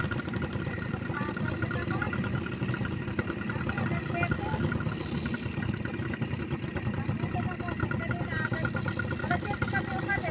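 Motorbike engines running steadily, with people talking faintly in the background.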